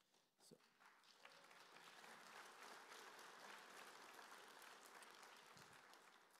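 An audience applauding, faint, swelling over the first couple of seconds, holding steady, then dying away near the end.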